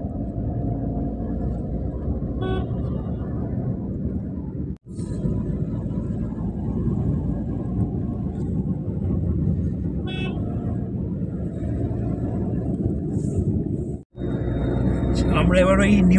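Steady road and engine noise inside a moving Suzuki car, with two short horn toots about two and a half seconds and ten seconds in. The sound cuts out for an instant twice.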